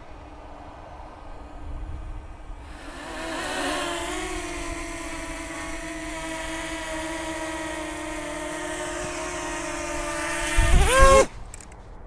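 DJI Mini 2 quadcopter's propellers whining as it hovers close by, a steady pitched hum. Near the end the pitch sweeps up sharply and loudly, then the sound stops suddenly as the drone is taken in hand and its motors cut.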